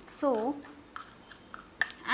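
Metal spoon scraping and clicking against a white ceramic bowl while stirring a gritty coffee, sugar and oil scrub, with a sharper clink near the end.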